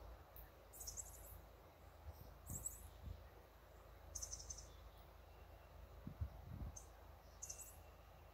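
Near-silent outdoor quiet with faint, short high-pitched chirps about half a dozen times, and a few soft low thumps.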